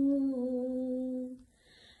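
A woman's unaccompanied singing voice holding one long, steady note. It fades out about one and a half seconds in, leaving a brief quiet pause before the next line.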